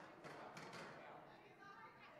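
Faint, distant talking of people in a large room, with a few soft taps.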